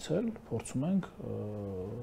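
A man speaking, then holding one long, flat vowel, a drawn-out hesitation sound, for the last second.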